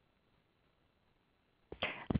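Near silence: faint room hiss in a pause in the talk, with a voice starting just before the end.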